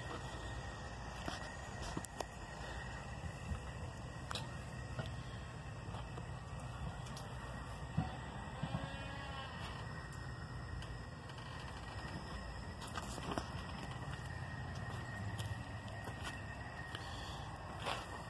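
Quiet background with a steady low rumble and scattered faint clicks and knocks, one a little louder about eight seconds in, and a faint wavering call just after it.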